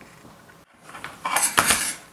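A stiff sheet of black paper being handled, rustling and sliding for about a second in the latter half.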